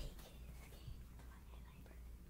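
A boy whispering faintly, the words too soft to make out, over a low steady room hum.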